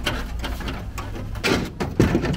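Rusted-out steel wheel well of a pickup bed being torn out by hand: irregular crunching and tearing of rotten sheet metal. The louder tears come about one and a half seconds in and at the very end.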